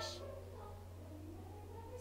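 A steady low hum through a pause in singing, with the last of a sung word cut off just at the start.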